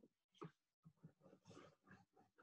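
Near silence, with faint short irregular scratches of a felt-tip marker writing on paper.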